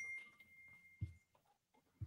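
Near silence, with a faint steady high-pitched tone through the first second or so and a soft tap about a second in.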